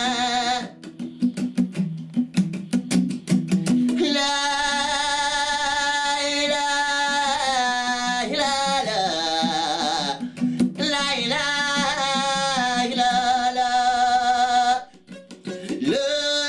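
A man singing with a strummed acoustic guitar. The first few seconds are quick guitar strums, then the voice comes in with long held notes that slide in pitch. Everything breaks off briefly near the end before the singing picks up again.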